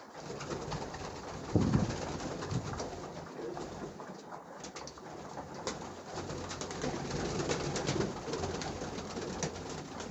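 Domestic pigeons cooing in a loft, with wings flapping and clattering as the flock moves about. A run of quick flutters comes in the second half.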